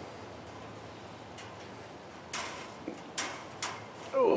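Hardware cloth (galvanized welded wire mesh) being bent by hand against the wire armature: a few short ticks and scrapes of wire on wire, the loudest three in the last two seconds.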